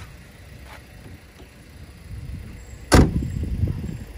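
The front door of a Mazda seven-seat minivan being shut once, a single sharp slam about three seconds in.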